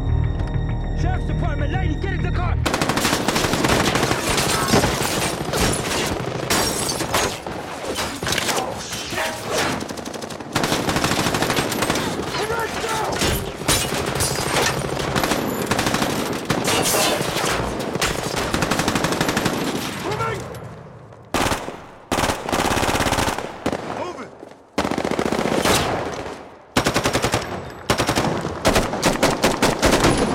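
A low musical drone, then about three seconds in, heavy automatic gunfire breaks out from several assault rifles and a belt-fed light machine gun and runs on in dense volleys. In the last third it thins into separate bursts with short gaps between them.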